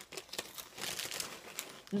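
Someone chewing a crunchy snack, a run of small crackling clicks from the mouth.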